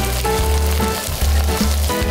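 Whole grass prawns sizzling in hot camellia-seed oil in a wok, the oil bubbling vigorously around them, with background music playing.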